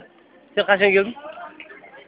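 A person's voice: one short, loud vocal call about half a second in, lasting about half a second.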